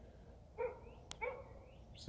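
A dog barking twice, fainter than the nearby speech, with the two short barks about half a second apart.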